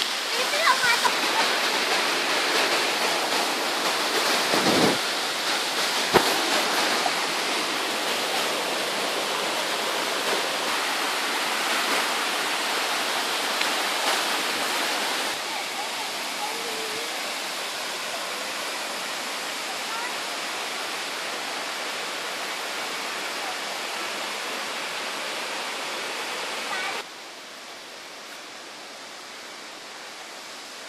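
Water of a tiered limestone waterfall rushing over its ledges in a steady roar of noise. The level drops suddenly a little past halfway and again near the end.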